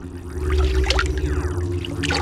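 Cartoon sound effect of a glowing dimension portal: a steady low hum, with several short rising, bubbly sweeps in the middle as the fish swim into it.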